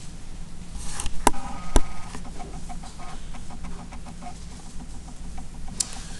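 A sheet of paper slid and handled on a tabletop, with two sharp knocks on the table about a second in and a few light taps after.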